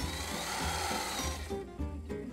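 Sewing machine running for about a second and a half, then stopping, over background music.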